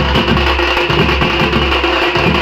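Street drum band playing loudly: big bass drums and smaller side drums beaten with sticks in a fast, unbroken rhythm.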